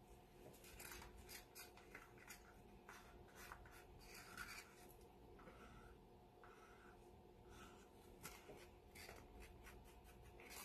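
Faint scraping and light clicking of a paint stick against small plastic cups as acrylic paint is scraped into them, in short irregular strokes over a faint steady hum.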